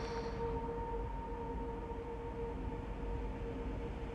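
Steady background drone: two held tones over a low rumble, unchanging, with no other events.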